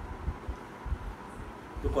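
Irregular low thumps and rumble of microphone handling or clothing noise as the seated man shifts, over a faint steady hum; a man's voice starts right at the end.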